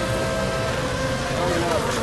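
RC racing boats running at speed, their motors giving a steady whine, with people's voices over it.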